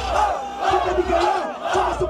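Large crowd yelling and cheering together in many loud, overlapping voices: the crowd's roar of approval for a rapper's punchline.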